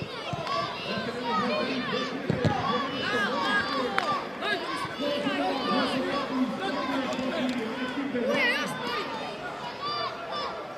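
Many high children's voices shouting and calling over one another, with a lower voice held through the middle, as at a youth football match. One sharp knock comes about four seconds in.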